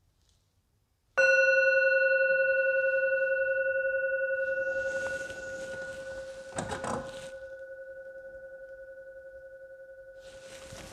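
A singing bowl struck once about a second in, ringing on with a slowly fading, wavering tone. A rustle and a few knocks about six to seven seconds in, as of someone moving in a wooden pew.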